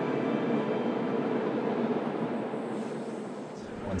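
Rhaetian Railway passenger train rolling across a stone viaduct, a steady rumble of wheels on rails that fades away about three and a half seconds in.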